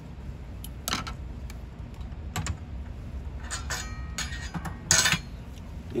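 Handling noise from plastic tubing and fittings on a Steritest canister: scattered light clicks and rustling, with a louder clack about five seconds in.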